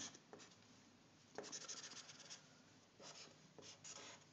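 Faint strokes of a felt-tip marker on paper: a quick run of short scratchy strokes about a second and a half in, and a few more near the end.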